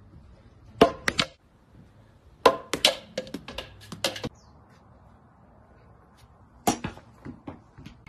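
A series of sharp knocks and smacks in three bunches: a few about a second in, a quick run of them from about two and a half to four seconds, and a few more near the end.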